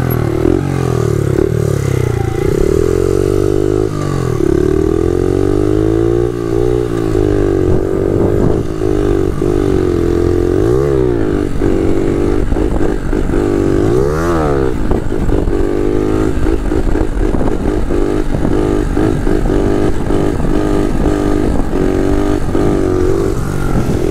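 Honda Monkey minibike fitted with a 72cc single-cylinder four-stroke engine being ridden, its engine note rising and falling again and again as the throttle is opened and eased.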